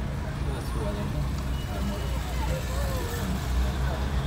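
Car engine and road noise heard from inside a slowly moving car, a steady low rumble, with faint voices in the background.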